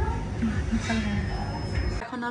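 Indistinct talking with a steady low rumble underneath.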